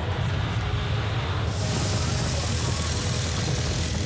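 Polski Fiat 126p's small air-cooled two-cylinder engine running steadily as the car drives along asphalt, with road and wind noise over it; a higher hiss joins about a second and a half in. Background music plays underneath.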